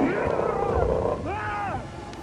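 A bear roaring and growling, heard as two calls, the second an arching roar that rises and falls in pitch just past the middle.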